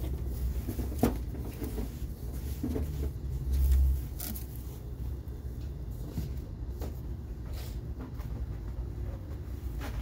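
Things being lifted out of and set against an open wooden cedar chest on a van's floor: scattered knocks and clacks, the sharpest about a second in, over a low rumble that swells just before four seconds.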